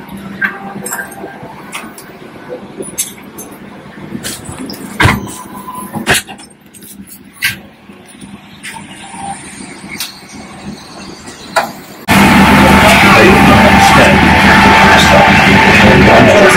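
Aircraft cabin ambience during boarding: a faint steady hum with scattered clicks and knocks. About twelve seconds in, an abrupt cut to a much louder, dense, steady sound.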